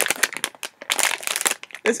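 Plastic blind bag of a mystery toy figure crinkling in quick, sharp crackles as it is handled in the hands.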